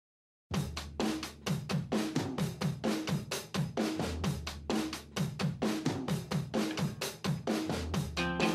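Background music: a drum kit playing a steady beat of kick, snare and hi-hat, starting about half a second in. Other instruments come in near the end.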